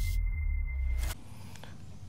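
Electronic logo-transition sting: a deep bass hum under a thin, steady high tone, cutting off suddenly about a second in, then faint background sound.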